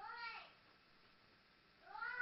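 A cat meowing: one short meow at the start, then a longer one beginning near the end.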